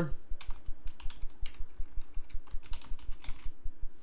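Typing on a computer keyboard: a quick, uneven run of key clicks that pauses shortly before the end.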